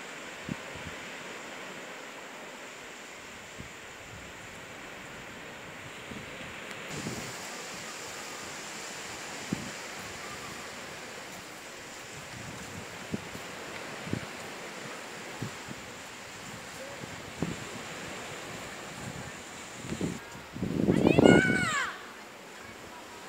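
Steady wash of small surf and wind on a sandy beach, with a few faint knocks. Near the end a brief, louder voice close to the microphone.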